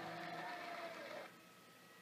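Guitar notes played slowly and left ringing, with one note bending down in pitch, before the playing dies away a little past a second in.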